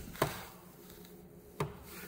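Two short, sharp clicks or knocks about a second and a half apart, over faint room tone.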